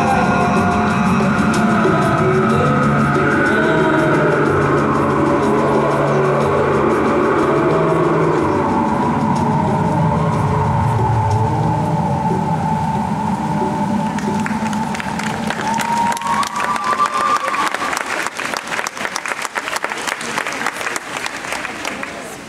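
Music for a synchronised swimming solo routine playing over a pool hall's sound system, dying away around the middle. Audience applause then starts and builds until the end, as the routine finishes.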